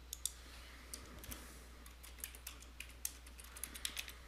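Faint computer keyboard keystrokes: an irregular run of light clicks as a short phrase is typed into a text field.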